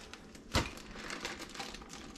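Plastic zip-top freezer bag crinkling and clicking as it is handled by its zip seal, with one sharper click about half a second in.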